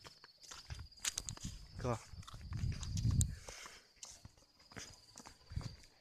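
Footsteps on a dirt path, an irregular series of soft low thuds with small clicks, mixed with the rubbing of a hand-held phone.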